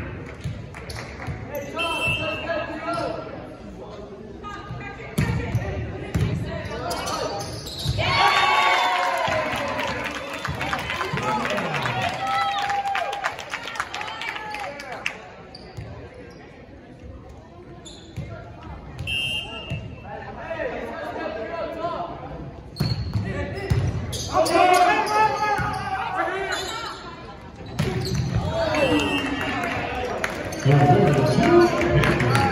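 Volleyball being struck and bouncing in an echoing gymnasium, with sharp smacks from serves, passes and hits, and players' and spectators' voices calling out in bursts.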